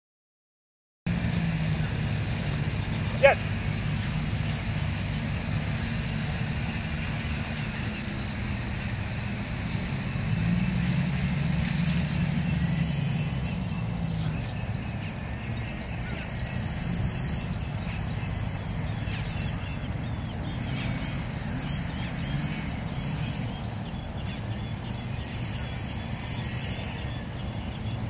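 A steady low hum like a running engine, with outdoor background noise, starting about a second in. About three seconds in there is a single short, sharp rising chirp.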